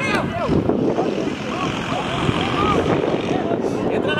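Several indistinct voices of players and coaches calling out across a football pitch, overlapping one another over a steady background rumble.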